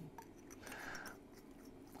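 Faint scraping of a fountain pen's barrel being screwed back onto its section, a soft rub of threads lasting about a second.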